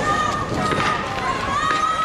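People running on a street, with hurried footsteps, while voices shout in long, drawn-out calls.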